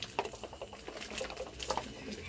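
Water sprinkled by hand into a concrete grave vault: light splashes and patters, heard as several short, sharp sounds over a low background murmur.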